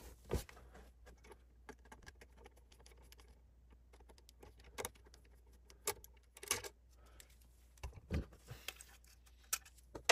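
Screwdriver working the terminal screws on a mechanical heat detector's plastic base, with scattered small clicks and light knocks of metal and plastic being handled as the wires and end-of-line resistor are freed.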